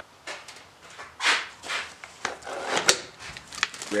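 Handling noise from fishing rods and reels being moved about on a carpeted boat deck: soft rubs and rustles with a few light knocks and clicks.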